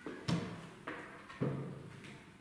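Three knocks about half a second apart as sheet music in a folder is set down against the wooden music desk of an upright piano, each followed by a short low ring from the piano's case.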